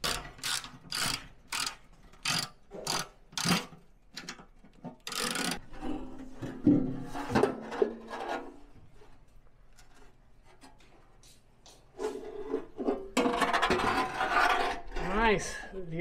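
Socket ratchet clicking in short runs as the oil pan bolts are backed out. Near the end comes a few seconds of metal scraping and clatter as the oil pan is worked loose.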